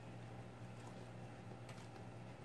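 Faint scraping and light clicks of a plastic spatula drawn over wet grout and the edges of mirror pieces, a few soft clicks near the end, over a steady low hum.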